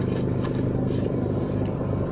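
A steady low rumble with a hum, like a motor running.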